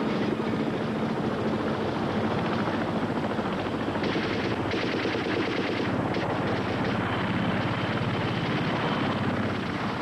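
Film action soundtrack of helicopter rotors and an airboat's engine and big rear propeller running at speed, mixed with rapid automatic gunfire, in a dense steady din.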